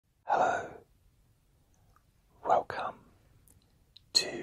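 A man's soft, breathy whispering in three short bursts: one near the start and two close together about halfway through.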